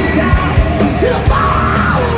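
A hard rock band playing live and loud, with distorted electric guitar, bass and drums, and a voice yelling over the music.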